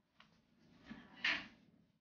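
A few faint knocks and clacks over a low room background, the loudest a short sharp clack about a second and a quarter in.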